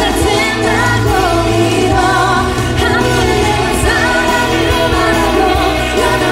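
A woman singing a Korean pop song live into a microphone, backed by a full band.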